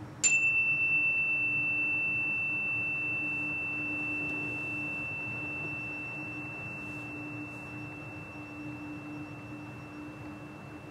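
A meditation chime struck once, about a quarter-second in, then ringing a single pure high tone that fades slowly. The chime marks the start of a deep relaxation pose.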